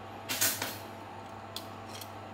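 A steel tape measure's blade being drawn out: a short sliding rasp about a third of a second in, then a faint click about a second and a half in.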